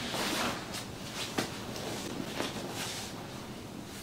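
Rustling of clothing and bodies shifting on a padded floor mat as a leg is moved and pressed, in soft irregular swishes with one sharp tap about a second and a half in.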